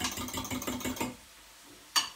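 Beaten eggs whisked with a fork in a glass jug: quick, even clicking strokes that stop about a second in, then one sharp click near the end.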